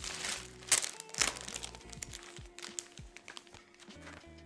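Background music over clear plastic packaging crinkling as new bedding is unwrapped and handled, loudest a little under a second in and again just after.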